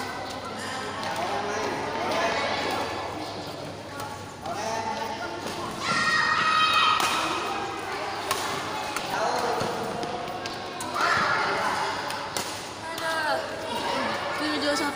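Voices calling out in an echoing badminton hall during a rally, with occasional sharp hits of rackets on the shuttlecock.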